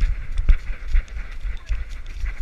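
A golden retriever running, heard through a GoPro strapped to the dog: uneven rumbling buffeting on the microphone from the fast motion, with thumps from its strides, the biggest about half a second in, and quick light clicks and rustles over the top.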